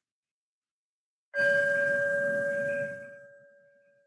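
A meditation singing bowl struck once about a second and a half in, ringing with a low tone and a higher one that fade away over about three seconds.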